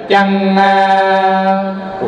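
Vedic chanting: a reciting voice holds one long vowel on a single steady pitch, fading a little near the end.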